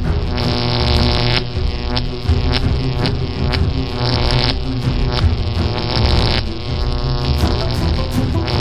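Electric zapping sound effect: a steady, buzzing drone overlaid with irregular bursts of crackle, as lightning arcs onto an egg in a frying pan.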